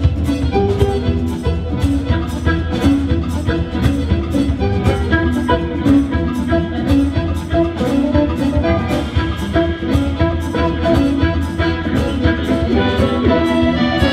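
Live blues band playing an instrumental on drums, upright double bass, accordion, harmonica and electric mandolin, the drums keeping a steady beat about twice a second.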